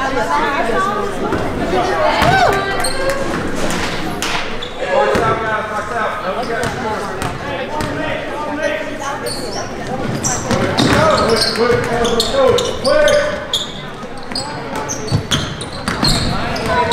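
Basketball bouncing on a hardwood gym floor among voices of players and spectators, echoing in a large gymnasium.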